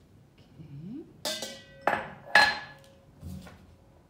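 A glass container clinking sharply three times against a hard surface, each strike followed by a brief ring, then a softer knock near the end.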